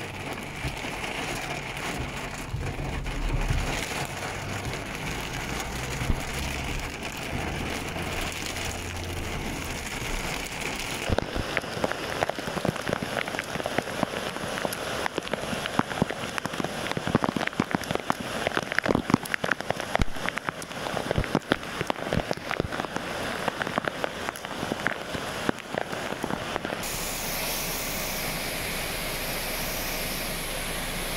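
Heavy rain falling during a flood, a steady hiss with a low vehicle rumble under it for the first ten seconds or so. From about eleven seconds in, raindrops strike close to the microphone in many sharp ticks. Near the end the sound gives way to a steadier rushing hiss of rain over floodwater.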